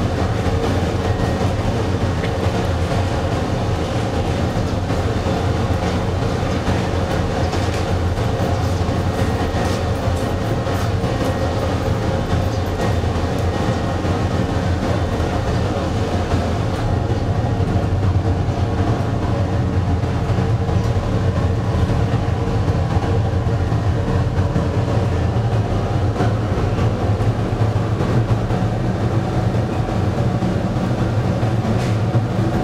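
Crematorium furnace running, with a coffin burning inside: a steady, continuous rushing noise with a low hum from the burners and blower.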